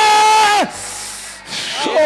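A man's voice through a handheld microphone, holding one high shouted note that breaks off about two-thirds of a second in. A rough, breathy rasp follows, close on the microphone, and the voice comes back near the end.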